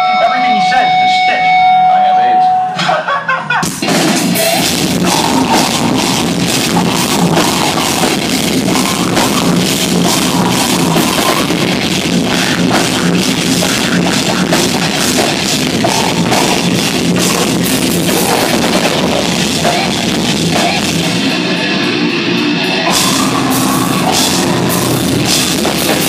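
A metal band playing live at full volume, with distorted guitars, bass and a rapid Tama drum kit. A steady held tone and crowd noise come first, and the whole band crashes in about four seconds in. The singer's vocals run over the music.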